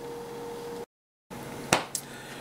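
Quiet room tone with a faint steady hum that cuts out completely for about half a second about a second in, followed by a single sharp click near the end.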